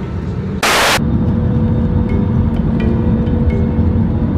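Steady low rumble of engine and airflow noise inside an Airbus A320-200's passenger cabin in flight. A brief, loud hiss cuts through it just under a second in, after which the rumble is slightly louder.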